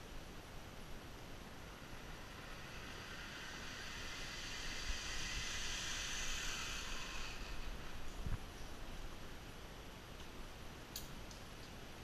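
Zip line trolley running along the steel cable as a rider comes in: a hiss that swells, then fades after about eight seconds, followed by a single knock. A few sharp clicks near the end.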